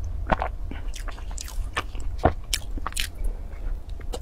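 Close-miked biting into and chewing a mooncake-style pastry: a quick series of sharp mouth clicks and soft crunches, over a steady low hum.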